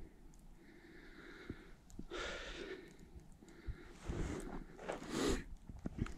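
A person breathing close to the microphone: about four breaths, the last two louder and sharper.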